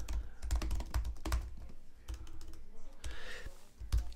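Typing on a computer keyboard: a quick, irregular run of key clicks with soft low thuds as a sentence is typed out.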